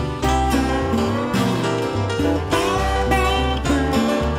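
Blues band music without vocals: guitar lines over a held bass line and a steady beat.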